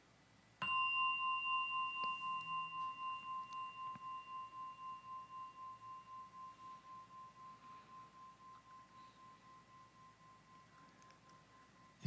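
A singing bowl struck once, about half a second in, its clear tone ringing on with a slow pulsing waver and fading gradually for about eleven seconds.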